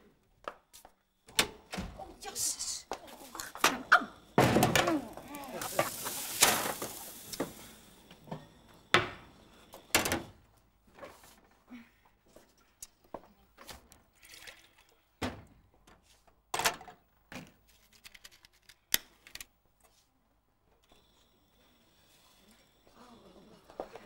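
Scattered knocks and clunks from a door, footsteps and a metal saucepan handled on a gas stove. About five seconds in, a rushing noise lasts a few seconds.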